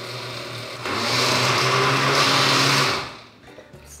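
Countertop blender running on thick cheesecake filling, quieter at first and louder from about a second in, then cut off about three seconds in.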